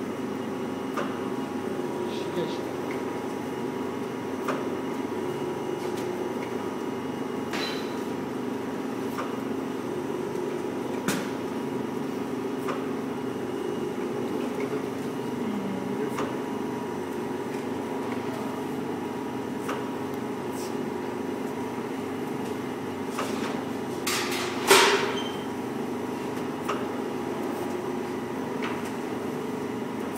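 Daub Slim vacuum dough divider running with a steady hum from its vacuum pump, with scattered light clicks and one louder knock about three-quarters of the way through.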